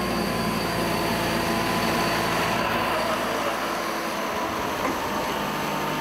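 Compact telescopic loader's engine running steadily, with a thin steady whine over it, as the machine carries a loaded pallet and lifts it into a truck.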